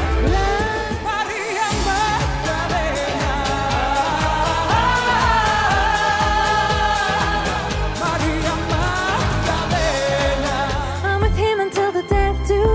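Pop song excerpts with a female lead vocal singing long held, wavering notes over a full band backing; the music changes to a different song near the end.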